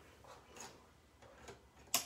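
Faint light plastic taps and clicks as a pen is fitted into the Cricut Joy's tool clamp, then one sharp click near the end.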